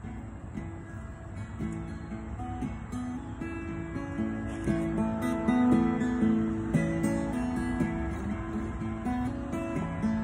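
Solo cutaway acoustic guitar playing the instrumental opening of a bluesy song, sparse at first and growing fuller and louder about four seconds in.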